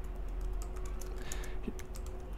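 Typing on a computer keyboard: a quick run of about ten keystrokes in two seconds.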